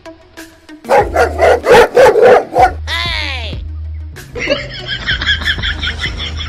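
Dog barking loudly, a fierce run of about eight barks in under two seconds starting about a second in. A falling glide follows, then a fast, high repeated sound over background music.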